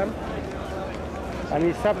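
Steady outdoor background noise with no clear voice for about a second and a half, then a man's voice starts up again near the end.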